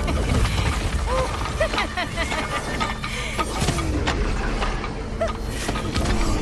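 Sound effects of an animated attack scene: a steady low rumble broken by several crashes, with many short, scattered cries from a crowd, under background music.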